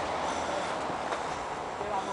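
Running footsteps on a dirt and stone path with a rough, steady rush of wind buffeting a handheld camera's microphone.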